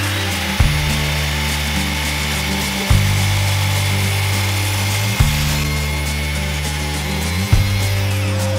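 Electric mitre saw running and cutting through a pallet-wood board, the blade noise easing a little after about six seconds. Background music with a repeating bass line plays underneath.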